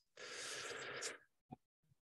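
A person's breath on an open microphone: a soft, breathy hiss lasting about a second.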